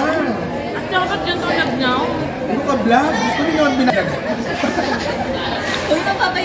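Chatter only: several people talking over one another.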